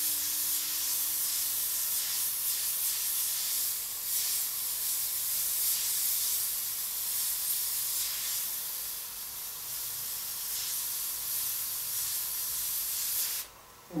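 Double-action gravity-feed airbrush spraying paint: a steady, high air hiss that rises and falls a little with each short stroke, then cuts off sharply near the end.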